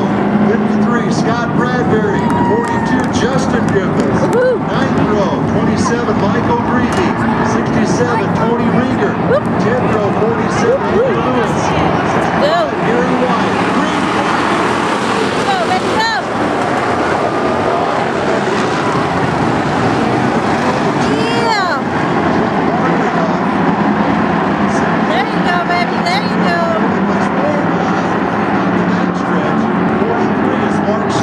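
A pack of bomber-class short-track stock cars running laps on an oval, a loud, continuous din of engines whose pitch rises and falls as cars come through the turns and pass by.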